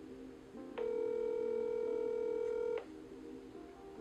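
Telephone ringback tone through a smartphone's speakerphone: one steady ring lasting about two seconds, starting about a second in. The called line is ringing and has not yet been answered.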